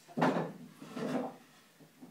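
Pieces of old wooden lath knocking and scraping against each other and a plastic garbage can: one sharp knock about a quarter second in, then a softer scrape around a second in.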